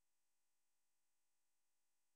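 Near silence: the audio is effectively muted, with only a faint steady hiss.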